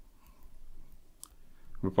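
Faint clicks and light scratching of a stylus tip on a graphics tablet as handwriting is drawn, with one sharper tap about a second in.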